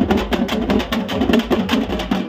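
Teenmar drum band playing a fast, driving rhythm of rapid drum strokes.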